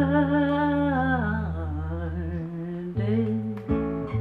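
A woman singing with an acoustic guitar: she holds a long note over sustained guitar chords, letting it fall away about a second and a half in, and the guitar then plays on alone, with new chords struck about three seconds in.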